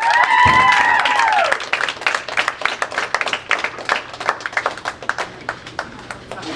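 A small group of teammates clapping and cheering, opening with one woman's long whoop of about a second and a half; the claps then thin out and fade over the next few seconds.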